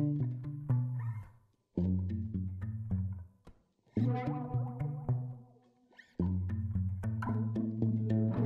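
Background music in four short phrases, each stopping dead for about half a second before the next begins.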